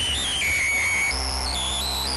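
Hardcore acid track in a breakdown with no kick drum: a high, whistle-like synth line stepping from note to note over a steady low bass drone.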